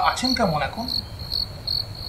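Crickets chirping in the background: a steady high trill with repeated pulses, under a few words of a man's voice at the start.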